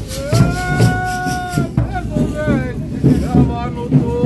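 A man's voice singing one long held note and then a wavering, bending phrase, leading a Congado chant, over steady beats of a large drum.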